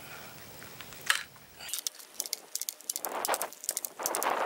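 Crosman 760 Pumpmaster air rifle being handled after oiling: one sharp knock about a second in, then a quick run of small metallic clicks and rattles.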